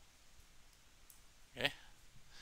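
Quiet room tone, then a man says a brief "okay" near the end.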